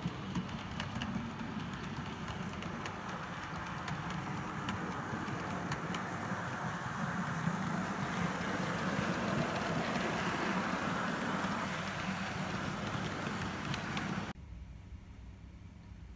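OO gauge model train, a tank locomotive hauling coaches, running along the layout's track: a steady rushing whir of motor and wheels with light clicks at the rail joints. It swells in the middle as the train passes close, eases off, then cuts off suddenly near the end.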